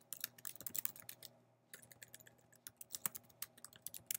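Computer keyboard typing: a quick run of key clicks, with a brief pause a little after a second in.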